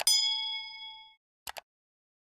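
A notification-bell ding sound effect that rings out and fades over about a second, right after a quick click. About a second and a half in comes a short double click, like a mouse button.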